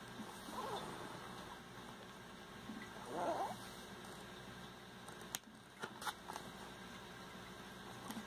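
Paper booklet being handled, its glossy fold-out page shifting and pages turning, with a few sharp clicks of paper about five to six seconds in. Two brief wavering sounds come about half a second and three seconds in, the second louder.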